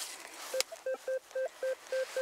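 RUTUS metal detector beeping a steady mid-pitched tone about four times a second as its search coil passes back and forth over a buried metal target. The detector reads this target as 18–19.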